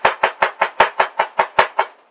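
Chef's knife rapidly slicing a red Bermuda onion thin on a cutting board: quick, even knocks of the blade on the board, about six or seven a second, stopping just before the end.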